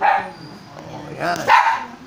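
A dog barking twice: once right at the start, and again with a longer call about a second and a half in.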